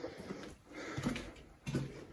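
Faint footsteps and handling rustle of a person walking, a few soft irregular steps.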